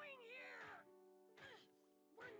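Quiet anime soundtrack: sustained background music with a character's wavering, drawn-out vocal sound over it in the first second, and a shorter one just after the middle.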